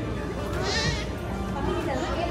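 A young child's short, high-pitched wavering squeal, about half a second long, rising over the steady chatter of a crowded shop and background music.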